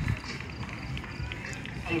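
Indistinct crowd voices over a steady low rumble, with no clear single speaker.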